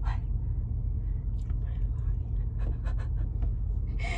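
Steady low rumble inside a semi-truck's sleeper cab, with a quick sharp breath at the start and a few faint clicks and rustles.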